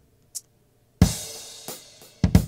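A programmed drum beat playing back from an Akai MPC: a few sparse, light high ticks, then about a second in a loud kick-and-cymbal hit that rings out, with another drum hit near the end.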